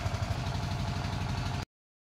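An engine idling with a steady low pulsing, cutting off abruptly near the end.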